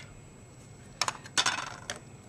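A few light clicks and clinks of small hard craft supplies being handled on the desk as a clear stamp is picked up. They come in a cluster about a second in, with more just after.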